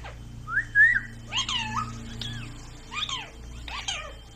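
Rose-ringed parakeet (Indian ringneck) whistling and calling: a rising whistle about half a second in, then a run of short calls that glide up and down in pitch.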